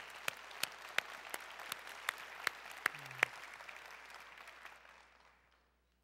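Applause from a large seated crowd, with one person's sharp claps close to the microphone standing out at about three a second. The close clapping stops about three seconds in, and the crowd's applause dies away soon after.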